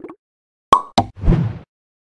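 Cartoon-style sound effects of an animated title appearing: two sharp pops about a quarter second apart, followed at once by a short, low thud with a brief rushing tail.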